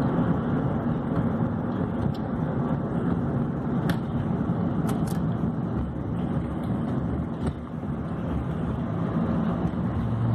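Steady road and engine noise heard inside a moving car's cabin, with a few faint clicks about four and five seconds in.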